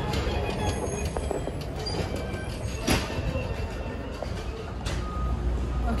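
Busy market loading-dock noise: a steady low rumble of vehicles and machinery, with scattered clatter and knocks and one sharp knock about three seconds in.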